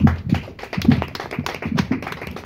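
Audience clapping, a run of quick sharp claps, with laughter.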